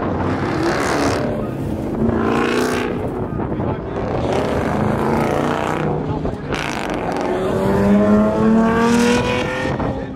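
A car engine revving hard in long pulls, its pitch climbing steadily near the end, with tyre noise as the car slides around in circles doing donuts.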